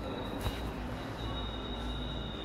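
Steady background hum with a thin, high-pitched whine running through it, and one short click about half a second in.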